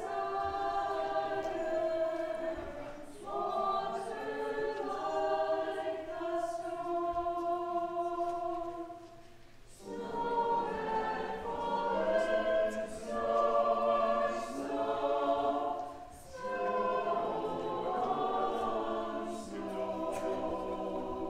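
Mixed church choir singing a slow piece in long, sustained phrases. The singing pauses briefly about halfway through, then comes back in fuller.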